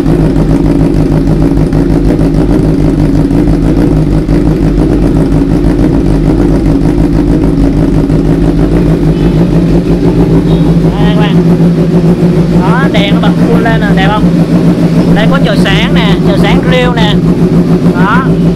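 Honda CBR1000RR SP's inline-four engine idling steadily through an SC-Project carbon slip-on exhaust, not revved.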